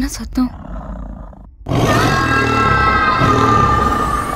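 A loud animal roar, like a big cat's, bursts in suddenly after a short hush about a second and a half in. It holds to the end, its pitch drifting slightly downward.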